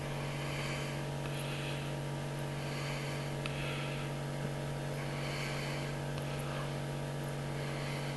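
Steady low electrical hum, with faint soft noise rising and fading every second or so.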